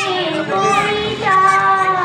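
A young girl sings a Bengali Islamic ghazal (gojol) into a microphone. She holds long notes and slides between them, with a short break a little past the middle.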